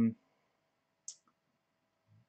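A single short, faint click about a second in, after the end of a spoken 'um', over quiet room tone with a faint steady hum.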